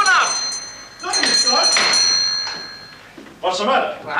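A doorbell rung twice, its high ringing tones holding on and fading away; nobody answers it.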